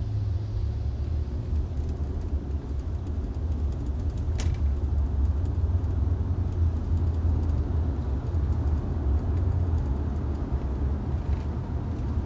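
Steady low rumble of a moving vehicle heard from inside its cabin, with one short click about four and a half seconds in.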